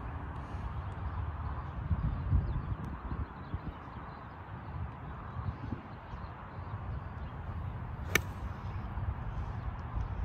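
A golf club strikes a ball off the tee, one sharp click about eight seconds in, over a low, uneven outdoor rumble.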